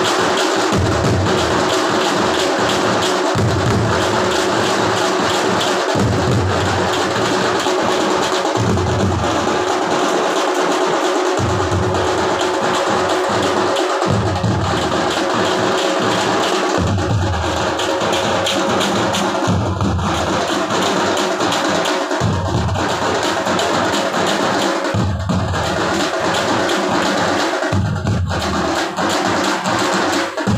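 Loud live festival percussion: drums beaten rapidly and continuously with sticks, over a steady held tone. Deeper drum beats come in spells of a couple of seconds with short breaks between them.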